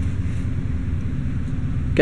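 Steady low rumble with no distinct clicks or knocks.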